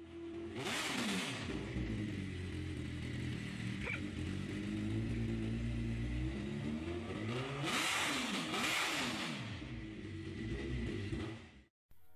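Sportbike inline-four engine idling with the throttle blipped, its pitch rising and falling about a second in and again a couple of times about eight seconds in.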